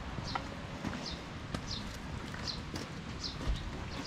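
Footsteps along a wet path, with a short, high, falling squeak repeating about every three-quarters of a second and a few sharp clicks over a steady noisy background.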